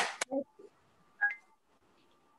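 A short electronic beep about a second in: two quick tones stepping up in pitch, lasting well under a second, after a last spoken word.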